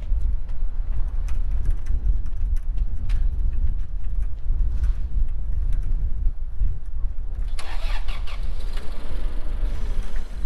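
Forklift engine running with a steady low rumble while it holds and moves a load. From about seven and a half seconds to near the end a louder, wider noise rises over it.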